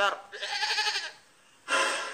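A short, wavering, bleat-like cry lasting under a second, goat-like in its quaver.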